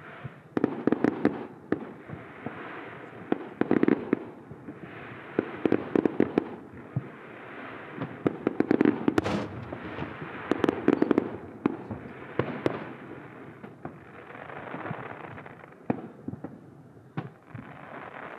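Fireworks display: aerial shells bursting in quick clusters of sharp bangs every second or two, with patches of crackling hiss between them.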